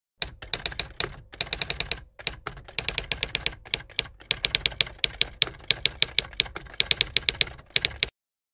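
Typewriter sound effect: rapid key clacks, about eight to ten a second, in runs broken by short pauses, stopping suddenly at the end.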